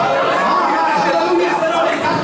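A man preaching into a handheld microphone, his amplified voice going on without a break.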